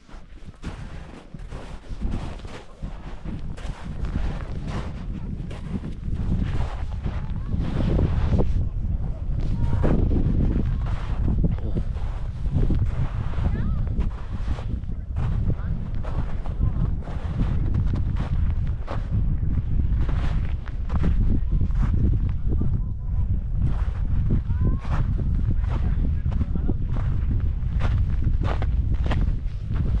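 Strong wind buffeting the microphone: a heavy, rumbling roar with irregular gust thumps. It grows louder over the first few seconds and then stays loud.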